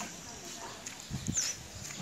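Quiet outdoor background noise in a pause between spoken sentences, with a couple of faint short low sounds a little over a second in.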